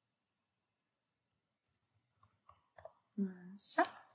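A few faint computer mouse clicks about two seconds in, followed near the end by a short wordless voiced 'uh' and a breath from a woman.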